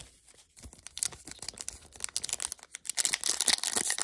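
Foil wrapper of a Topps Merlin trading card pack crinkling and being torn open. The crackling starts about a second in and grows denser near the end.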